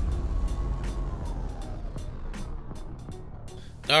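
Logo-sting sound design fading out: a low rumble with a faint tone that glides slowly downward, dying away over about four seconds.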